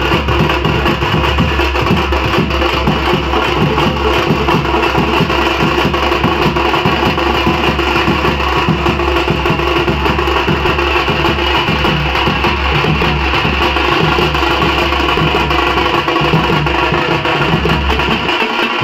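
A street drum band of stick-played side drums and a bass drum playing a fast, continuous beat. A steady low hum runs underneath.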